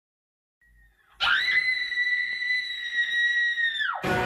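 A shrill, high-pitched scream held for nearly three seconds on one steady pitch, swelling in sharply about a second in and dropping away at the end.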